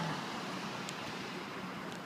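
Steady outdoor background noise of traffic, with a faint low hum and a small tick about a second in.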